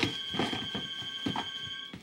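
A steady, high electronic ringing tone held for nearly two seconds, then cutting off suddenly, with a few soft footsteps under it.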